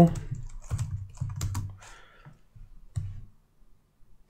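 Computer keyboard keystrokes: a handful of separate key clicks, irregularly spaced, with a pause before the last ones.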